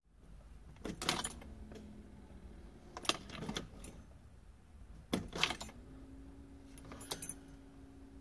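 Keys on a key ring jangling in four short clattering bursts about two seconds apart, as the ignition key is handled and turned.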